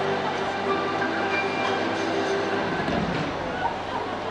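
The final held chord of a song dying away in a large arena's echo, over a steady crowd murmur.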